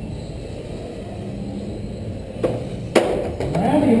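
1/10-scale radio-controlled race cars running on an indoor track, heard as a steady noisy hall ambience, with two sharp knocks about half a second apart near the middle.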